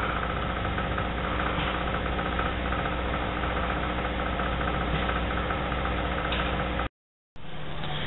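A small engine idling steadily with an even hum. It cuts off abruptly near the end.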